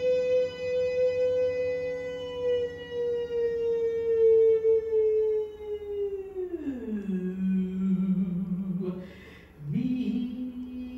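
A woman's solo voice holds one long high note for about six seconds, sagging slightly in pitch. She then slides down to a low note held for about two seconds, takes a quick breath, and starts a new note just before the end.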